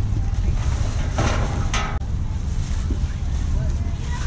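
Wind buffeting the camera's microphone, a steady low rumble, with a distant voice calling out briefly about a second in.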